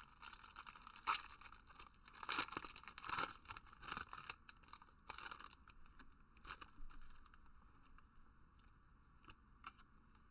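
Trading card booster pack's foil wrapper being torn open and crinkled, a run of sharp irregular rips and crackles over the first half or so, then softer rustling as the cards are handled.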